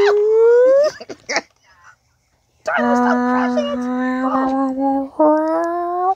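A person's voice wailing in three long drawn-out howls: a rising note in the first second, a long steady lower note after a pause, and a shorter rising one near the end.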